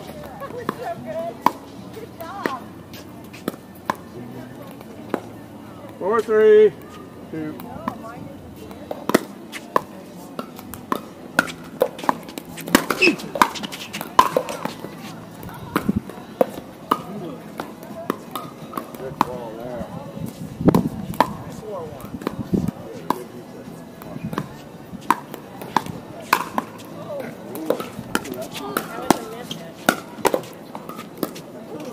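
Pickleball paddles hitting a hard plastic ball: sharp pops at irregular intervals through rallies on this court and the courts nearby, with a loud shouted call about six seconds in.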